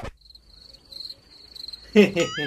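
Crickets chirping: a faint, high, pulsing trill, used as a comic sound effect to mark an awkward silence.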